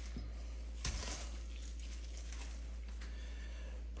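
Faint handling of a salted lemon by a gloved hand in a stainless steel bowl of kosher salt, with one soft bump about a second in, over a steady low hum.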